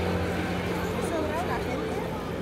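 Street ambience: a passing vehicle's engine fades out within the first second, then people's voices and chatter.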